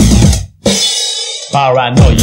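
Early-90s techno dance track with a fast, driving kick-drum beat that cuts out about a quarter of the way in. A bright crash-like noise washes in and fades, and a brief voice comes in near the end just before the beat returns.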